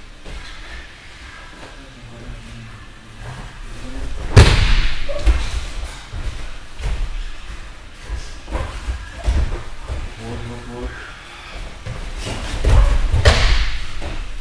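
Bodies thrown onto padded gym mats during grappling throw practice: a heavy slam about four seconds in and another just before the end.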